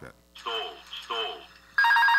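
Airbus A330 cockpit stall warning from the Air France 447 recording: a synthetic voice calls "stall" twice, then a loud, rapidly pulsing alarm tone cuts in suddenly near the end. The warning signals that the aircraft is in an aerodynamic stall.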